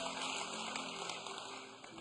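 Quiet background music: soft, sustained keyboard chords held under the service, fading slightly near the end.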